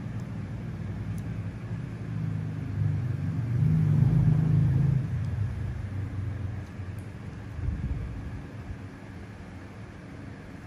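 A low motor rumble with a steady hum, growing louder to a peak about four seconds in, swelling briefly again near eight seconds, then fading.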